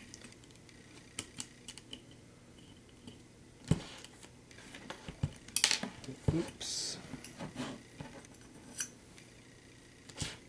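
Hands handling and fitting parts of a hexacopter frame: scattered small clicks and knocks of hard plastic, carbon and metal parts. The loudest knocks come about four and six seconds in, with a brief rustle just after.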